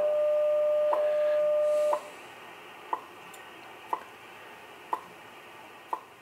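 WWV shortwave time signal on 10 MHz, heard through a ham transceiver's speaker over receiver hiss. A steady tone of about 600 Hz sounds for the first two seconds and then cuts off, leaving only the once-a-second ticks. The tone drops out ahead of the voice time announcements, and the ticks keep marking each second.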